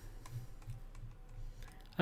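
Faint clicking and tapping at a computer: a few soft taps about a third of a second apart.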